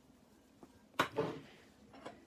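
A single short knock about a second in, from a can or utensil being handled at the kitchen counter and sheet pan, in an otherwise quiet kitchen.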